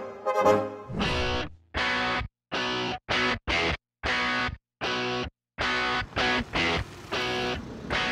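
Music: distorted electric guitar chords in short stabs, each cut off abruptly into silence, running on more continuously in the last two seconds.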